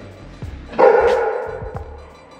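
A dog barks once, loudly, a little under a second in, the sound fading away over about a second.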